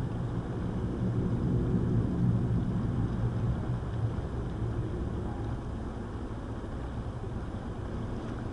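Fast-flowing river water rushing and churning over a riffle: a steady low rush that swells slightly about two seconds in.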